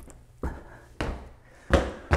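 Footsteps of a man climbing stairs and stepping onto the upstairs floor: four dull thuds about half a second apart, getting louder as he comes closer.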